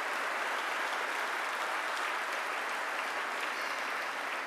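Audience applause in a hall, steady clapping from a large seated crowd.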